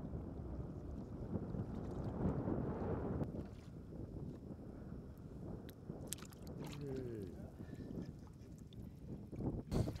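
Wind rumbling on the microphone over shallow seawater, with a few light splashes as a hand reaches into the water for a razor clam about six seconds in. A brief voice sounds about seven seconds in.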